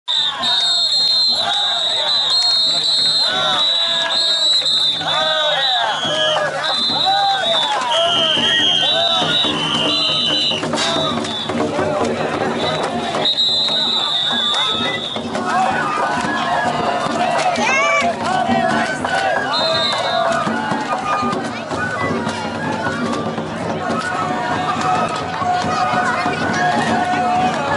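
Festival float music and a shouting crowd: high piping flute notes that step between pitches over scattered percussion strikes, while many voices shout together as the float is hauled. The flute is plainest in the first half and drops out after about 15 seconds, leaving the voices to carry on.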